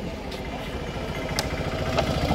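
A small vehicle engine running with an even low pulse, growing louder toward the end, with a sharp click about one and a half seconds in.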